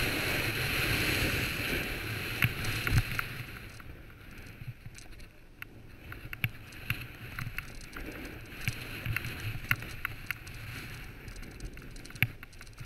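Snowboard running fast downhill: a steady rush of wind on the GoPro's microphone and the board hissing over snow, louder for the first three seconds and then softer. Scattered short, sharp clicks and knocks as the board runs over chopped-up, tracked snow.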